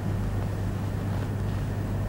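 Steady low hum with faint hiss underneath: the background noise of the recording, with no other sound.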